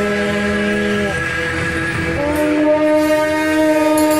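Several shaojiao, long brass processional horns, sounding held notes together in a clashing chord. The chord thins out about a second in, and a new, louder set of held notes starts a little after two seconds in.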